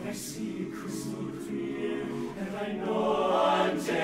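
Men's barbershop chorus singing a cappella in close harmony, holding sustained chords that swell louder about three seconds in.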